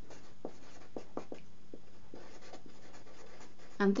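Felt-tip marker writing on paper: a run of short scratchy strokes as words are handwritten.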